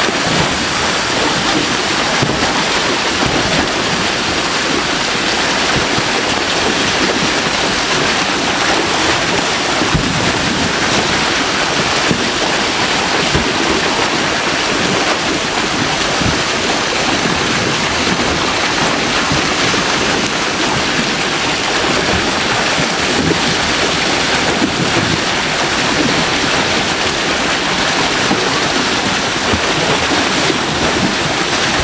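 River water pouring over a weir into a churning pool, a loud, steady rush; the river is running high.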